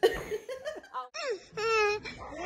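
Baby laughing: a few short high-pitched laughs, then a louder, longer squealing laugh near the end.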